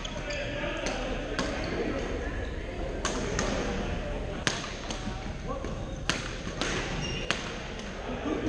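Badminton rackets striking a shuttlecock in a rally: about eight sharp cracks at irregular intervals, ringing in a large gym hall, over a steady murmur of voices.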